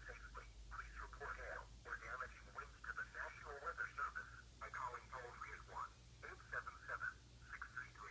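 A tinny, narrow-band voice from a tablet's small speaker reading out an Emergency Alert System tornado warning, over a steady low hum.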